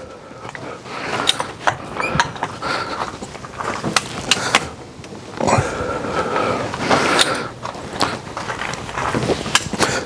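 Red Hi-Lift farm jack being pumped in slow, steady strokes under load as it lifts a vehicle by its wheel. The steel climbing pins and handle mechanism clack and click repeatedly, with occasional metallic squeaks.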